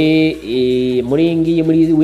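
A man's voice drawing out two long syllables at a steady pitch, the second held for about a second.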